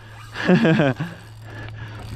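A man's brief wordless vocal outburst, falling in pitch, over the steady low hum of the boat's idling engine.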